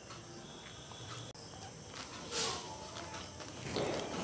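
Faint sloshing of water as a hand turns cut eggplant pieces soaking in a plastic bowl, with one brief splash about two and a half seconds in.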